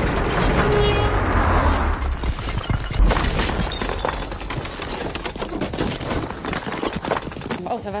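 Film sound effects of a plaster and brick wall bursting apart, with debris crashing and clattering and glass shattering. The loudest impact comes about three seconds in.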